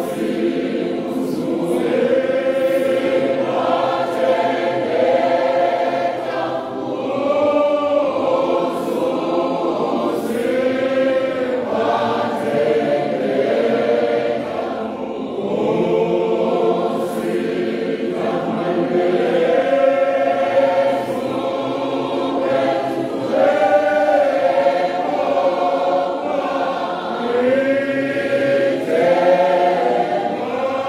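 A church congregation of many voices singing a hymn together in slow, held phrases with short breaks between lines.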